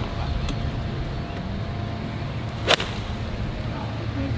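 A golf club striking the ball and turf on a full pitch shot: one sharp crack about two and three-quarter seconds in, over a steady low background rumble.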